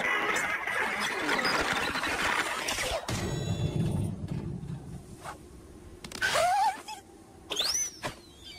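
Cartoon sound effects: a busy clatter of effects for about three seconds, then a low rumble, then two short squealing glides in pitch near the end.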